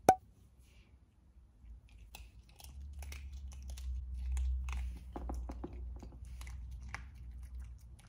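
A small Yorkshire terrier chewing a crunchy treat: a run of small, irregular crunches for several seconds, after a single sharp click right at the start.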